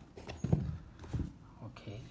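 A person's voice making a few brief, low, murmured sounds with no clear words.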